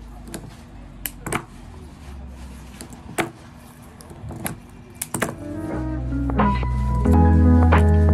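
Faint clicks and rustles of eucalyptus stems and leaves being handled on a work table. About six seconds in, background music with a heavy bass line comes in and becomes the loudest sound.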